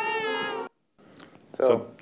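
End of an animated film clip's soundtrack: a held musical tone with a high, wavering cry-like voice over it, cut off abruptly within the first second. After a brief silence, a man starts to speak.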